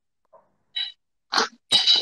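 Three short, harsh bursts of noise through a wireless earphone microphone being handled close to the mouth during a sound check; the link is shrill and distorted.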